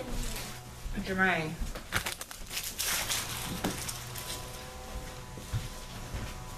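A short voice sound about a second in, followed by a couple of seconds of rustling and scuffing noise.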